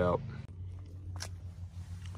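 A low steady background hum with one short, sharp click about a second in.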